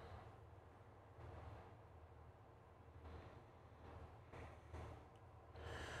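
Near silence: room tone with a faint steady low hum and a few soft, faint bumps.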